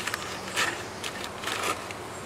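Short dry rustling and scraping sounds, a few scattered bursts, from hands working a bee smoker stuffed with newspaper and pine needles while it is being lit.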